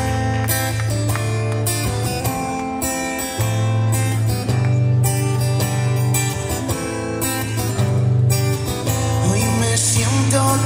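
Live band playing a song's instrumental intro: acoustic guitar strumming with a steady bass line and band accompaniment, heard through the hall's PA.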